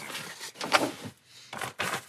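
Fabric rustling as a backpacking quilt and pack are lifted and handled, with a sharp knock a little under a second in and a few more short knocks near the end.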